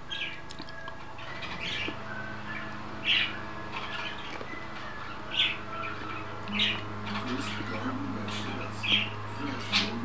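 Pet parrot giving short squawks and chirps every second or two, about seven in all. A steady low hum comes in underneath about two seconds in.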